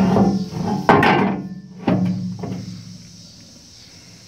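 Steel loader mounting bracket clanking about four times as it is handled and knocked, the heavy metal ringing briefly after each knock; the loudest is about a second in, and the ringing fades out after about three seconds.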